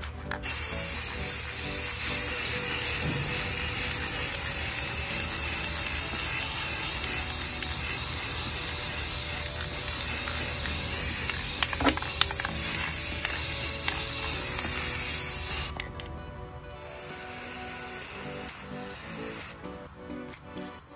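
Aerosol spray paint can spraying black paint onto a metal tray in one long, steady hiss that cuts off about three-quarters of the way through; a fainter hiss follows.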